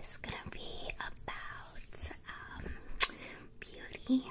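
A woman whispering, with a short sharp click about three seconds in.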